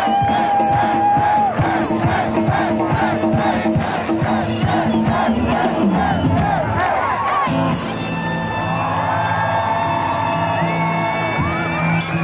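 Live band playing a bolero, with a large crowd shouting and cheering along. About two-thirds of the way through the drumbeat stops and long held notes ring on.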